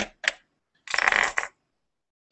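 Handling noise as the laptop with the webcam and microphone is touched and moved: a sharp click, a short rustle, then a longer scraping rustle about a second in, with the sound cut to silence between them.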